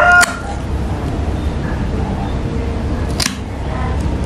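Bonsai pruning shears snip through a green Sancang shoot once, a sharp single click about three seconds in, over a steady low background hum. A brief pitched voice-like sound cuts off at the very start.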